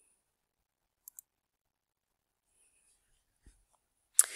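Near silence: room tone, with a couple of faint clicks about a second in and near the end.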